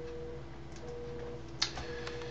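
A faint single-pitched tone sounding in half-second pulses about once a second over a steady low hum, with one short sharp click near the end.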